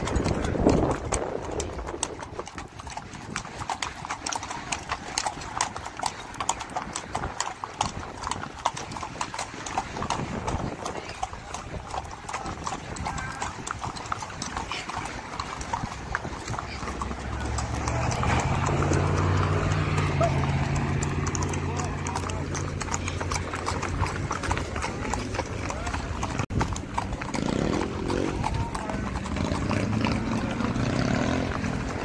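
Horses' hooves clip-clopping on a paved road, a dense run of hoofbeats throughout. About halfway through a low steady hum joins in under the hoofbeats.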